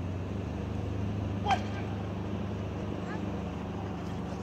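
A steady low hum, with one short shout of "ouais!" about one and a half seconds in.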